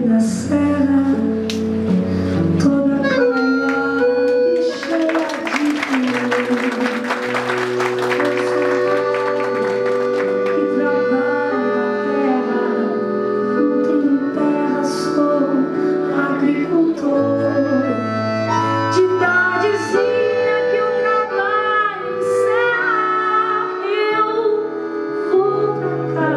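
Live acoustic ballad: a woman singing in long held phrases, accompanied by acoustic guitar over sustained low notes. A bright rattling shimmer runs for several seconds about five seconds in.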